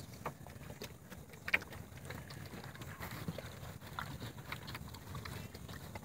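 Horses feeding at a black plastic trough: faint scattered clicks and knocks from the horses at the trough. The loudest knock comes about a second and a half in.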